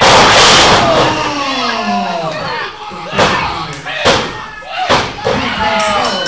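A loud crash of a body hitting the wrestling ring's canvas, with a crowd shouting, then three sharp slaps on the ring mat about a second apart: a referee's three-count pinfall, with the crowd yelling along.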